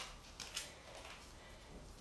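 Gloved fingers brushing and loosening potting soil: faint soft rustling, with a couple of small clicks near the start.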